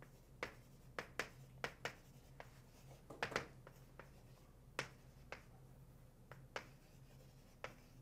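Chalk writing on a blackboard: a faint string of sharp, irregular taps and short scrapes, bunched together about three seconds in, over a steady low hum.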